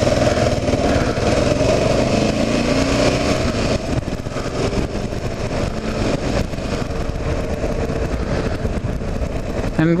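Kawasaki KLR 650's single-cylinder engine under way, rising in pitch as it accelerates out of a bend, then easing off about four seconds in, with a steady rush of wind and road noise.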